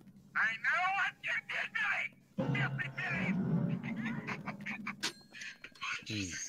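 The film's obscene phone caller's distorted voice over a telephone line: high, sliding, wavering cries, then lower sounds under the film's eerie score, and a sharp click about five seconds in.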